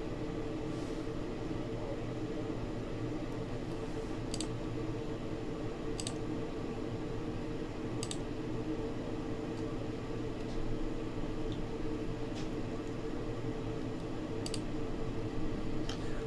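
A few sharp, single computer-mouse clicks, spaced a couple of seconds apart, over a steady background hum.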